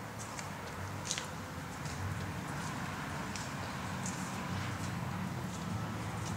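Footsteps and light scuffs on a concrete floor, a few sharp clicks scattered through, over a steady low hum.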